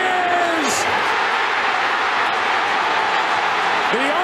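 Large stadium crowd cheering loudly and steadily as the winning run is called safe at home plate, with a commentator's voice briefly at the start.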